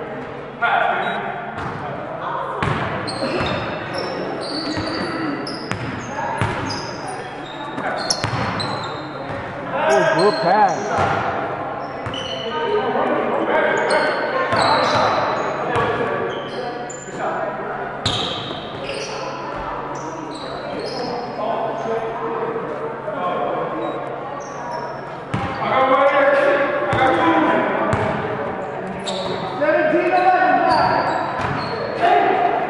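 Basketballs bouncing on a hardwood gym floor during play, mixed with players' voices calling out, in an echoing hall.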